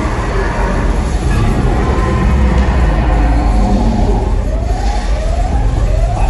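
A show alarm siren from the arena sound system starts about four seconds in: repeated rising wails about two-thirds of a second apart, over a loud, steady low rumble.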